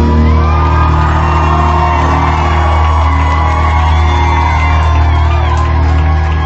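Live rock band playing loudly in a concert hall: a steady, heavy bass held underneath and a singer's drawn-out vocal line on top.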